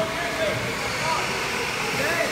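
Steady rushing noise of go-karts running on an indoor track, with faint voices carrying in the hall.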